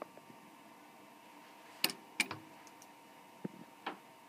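A few sharp, isolated clicks and taps from handling the quilt and sewing machine while the fabric is positioned under the presser foot. The machine is not stitching.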